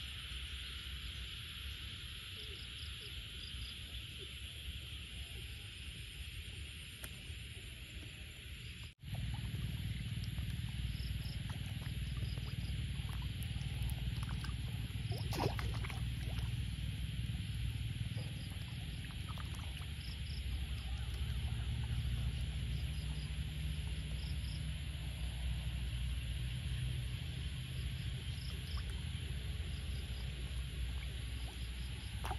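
Frogs calling in chorus after rain, a steady hiss of calls with short chirps repeating over it. About nine seconds in the sound cuts out for an instant and a louder low rumble comes in under the calls.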